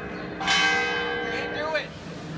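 Church bell tolling: one strike about half a second in, ringing on with many tones and slowly fading.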